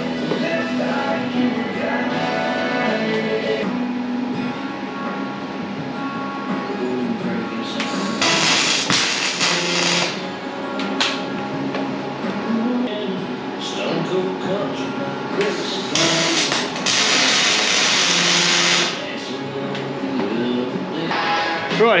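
Background music throughout, with a MIG welding arc hissing and crackling in four bursts of one to two seconds, starting about eight seconds in.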